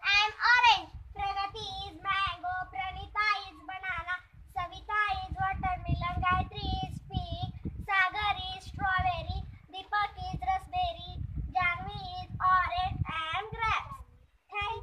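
Young schoolchildren singing a sing-song chant in turn, one high child's voice at a time in short phrases. A low rumble sits underneath from about five seconds in.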